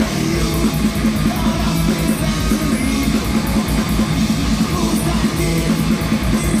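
Live heavy metal band playing loud, with distorted electric guitars and fast drums heard through the PA, recorded from the crowd.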